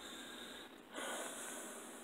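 A man breathing through his nose: a faint breath, then a stronger airy one about a second in that fades away.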